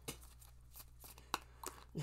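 Tarot cards being handled and shuffled in the hands, faint, with a few short card clicks, the sharpest a little past halfway.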